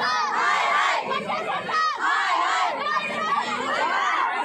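A crowd of schoolchildren shouting together in protest, many high voices overlapping.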